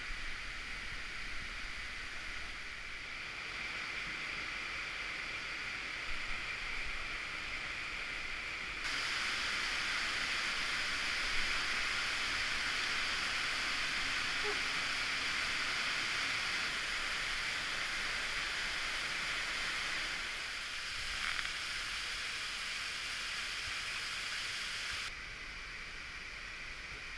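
Steady rush of an underground cave stream. It gets louder about nine seconds in, where the water runs down cascades, and drops back just before the end, with a few faint knocks.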